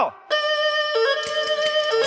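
Erhu playing long held notes, starting about a third of a second in, with the pitch stepping to a new note about a second in and again near the end.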